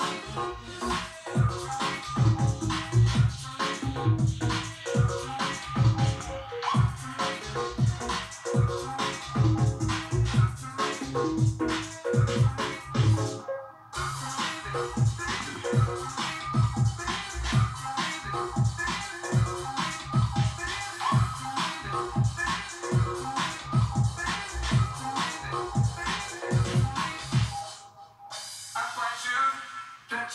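Electronic dance music with a steady heavy beat, played back from a cassette on a Technics RS-BX501 deck. The music drops out for a moment about fourteen seconds in, and near the end it stops and a new track with vocals begins.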